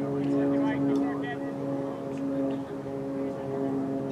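A steady low mechanical hum, like a running motor, with a few distant shouts from the field in the first second or so.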